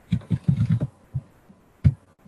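Computer keyboard keys tapped in a quick run of dull, low thuds, followed by a single sharper click near the end.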